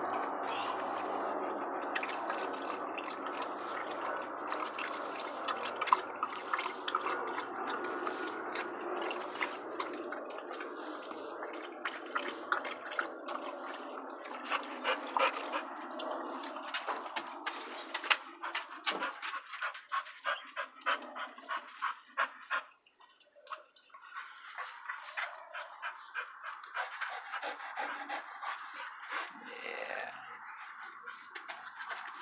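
A dog panting close to the microphone, with wet mouth clicks; in the second half the panting turns into quick, even breaths of a few a second.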